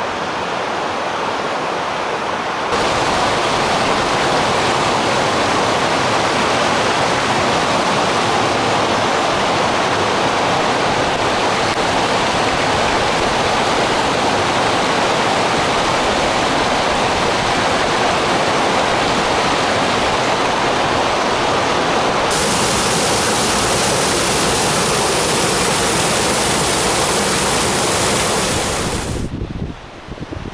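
Rushing water of a mountain creek, a loud, steady rush. Its tone changes abruptly about three seconds in and again past the twenty-second mark, then it drops away just before the end.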